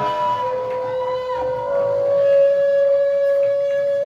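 Electric guitar through an amp holding long sustained notes, feedback-like, with little drumming underneath. A high note fades out about a second and a half in, while a lower note comes in about half a second in and holds steady.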